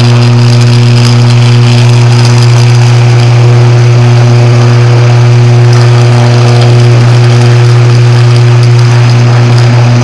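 Downed 13 kV power line lying on the ground and still live, giving off a loud, steady electrical buzz with a hiss above it.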